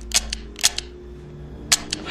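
An empty handgun dry-firing into someone's back, its hammer snapping several sharp clicks on empty chambers, three in the first second and two close together near the end, over a low hum.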